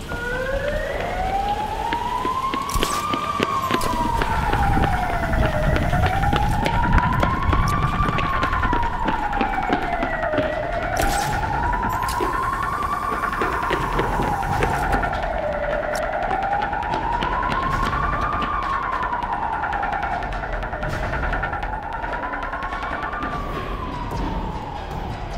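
A siren wailing, its pitch climbing slowly and falling again about every five seconds. A steady higher tone holds underneath it from about four seconds in until just before the end.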